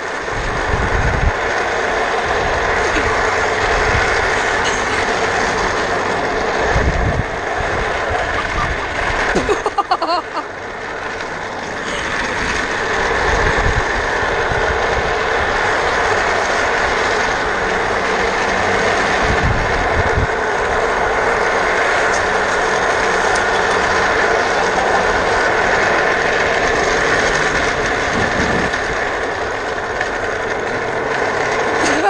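Office-chair casters rolling fast over rough asphalt while the chair is towed, a loud steady rattling rumble with wind buffeting the microphone. It eases briefly about ten seconds in.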